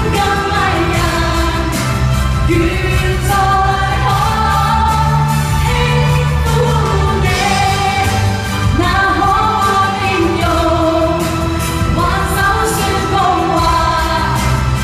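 Two vocalists singing a pop duet live into microphones over amplified backing music, the sung melody continuing without a break.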